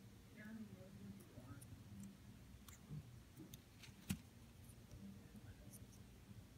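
Near silence with faint clicks and taps of small plastic and carbon-fibre model car parts handled by hand, and one sharper click about four seconds in.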